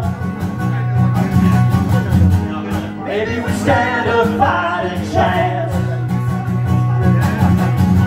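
Live country song: a guitar strummed steadily under a sung vocal line.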